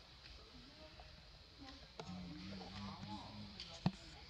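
Mostly quiet handling noise, with a low voice and a few faint arching tones in the second half, and one sharp click shortly before the end.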